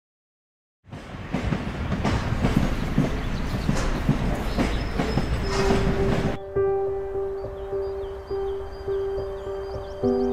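A train running on rail tracks, its wheels clattering over the rails with repeated clacks, starting about a second in and cutting off abruptly a little after six seconds. Soft music of long held notes follows.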